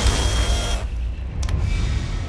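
Trailer score and sound design: a deep low drone under a loud rushing noise that cuts off a little under a second in, followed by a couple of faint sharp clicks.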